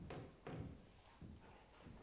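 Near silence: room tone, with two faint soft knocks, one at the start and one about half a second in.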